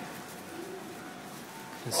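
A bird calling faintly, one low call in the first second, over quiet ambience.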